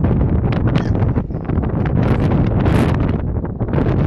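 Strong wind buffeting the microphone with a loud, steady rumble and a gust that surges a little before three seconds in. Short knocks and splashes run through it as a fish is netted out of the water and swung onto the boat.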